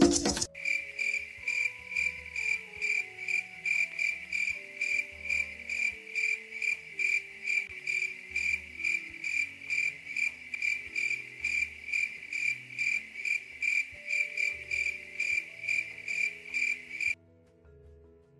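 A cricket chirping steadily in a high, even rhythm of about three chirps a second, with faint low musical notes underneath. It starts abruptly as the preceding music stops and cuts off suddenly shortly before the end.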